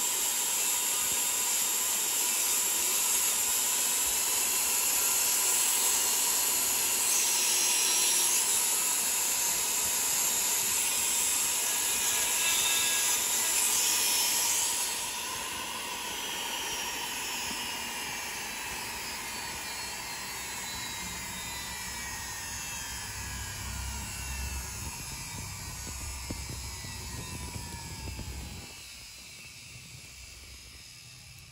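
High-speed rotary carving tool grinding walrus ivory, a loud high whine with hiss. About halfway through the grinding stops and the tool's whine falls slowly in pitch as it spins down.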